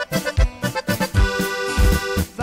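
Instrumental music led by accordion, with held and moving accordion notes over a steady bass beat.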